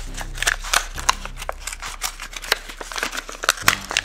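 Stiff plastic blister pack of a die-cast toy car being pried and pulled off its cardboard backing by hand: a run of irregular crackles, clicks and snaps of the plastic.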